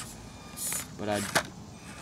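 Small electric motor of an Axial SCX24 micro RC crawler whirring briefly as the truck crawls over rocks, with a sharp click about one and a half seconds in.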